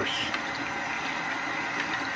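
Bathroom sink tap running steadily, water splashing into the basin and over a utility knife blade being rinsed and wiped with a small towel.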